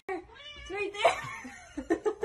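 A house cat meowing in drawn-out, wavering calls while it is held up, mixed with a woman's voice and short bursts of laughter near the end.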